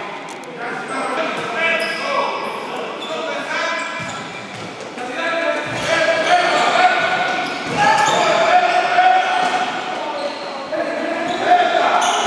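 Futsal being played in a large echoing sports hall: players' shouts and calls, with a few thuds of the ball being kicked.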